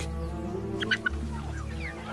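A few short bird calls about a second in and another near the end, over steady background music.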